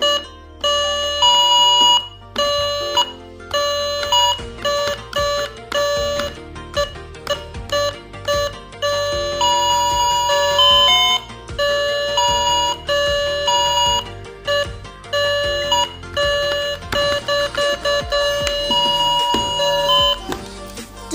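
Battery toy music box playing its electronic tune through a small built-in speaker: a simple melody of short beeping notes, several a second, with brief pauses between phrases.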